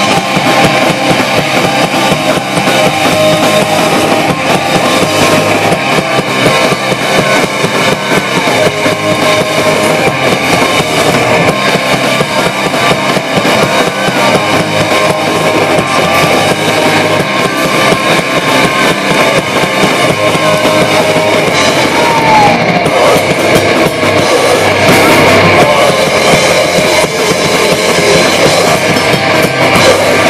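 A live rock band playing loudly and continuously: electric guitars over a drum kit.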